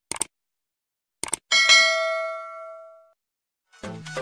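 Subscribe-button sound effect: two quick pairs of mouse clicks, then a notification bell ding that rings and fades over about a second and a half. Music with a beat starts near the end.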